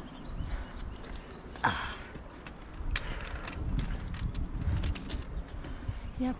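Hiking footsteps on a steep, rocky dirt trail: boots scuffing and knocking on loose stones at an uneven pace, over a low rumble on the microphone. The sharpest knock comes a little under two seconds in.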